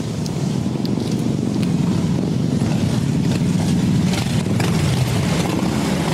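Several motorcycle engines rumbling as a group of riders approaches, growing louder over the first few seconds and then holding steady.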